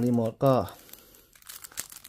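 Faint crinkling of a thin clear plastic sleeve as a remote control sealed inside it is handled and turned over in the hands.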